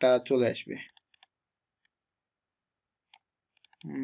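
Short, sharp computer mouse clicks, a few spaced out and then a quick run of four or five near the end, as text in a web form field is clicked and selected.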